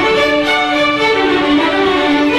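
School string orchestra playing, violins carrying a line of held notes over the lower strings.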